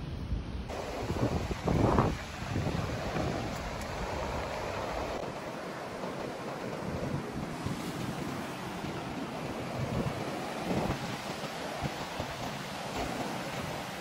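Surf washing onto a sandy beach, with wind buffeting the microphone, strongest in gusts during the first two seconds.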